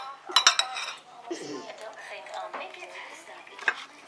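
Metal cutlery clinking against dishes and plates: a quick cluster of sharp clinks in the first half second, then a single clink near the end.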